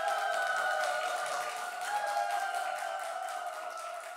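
A studio audience applauding, many hands clapping at once, with long held music tones over the clapping. The applause eases slightly near the end.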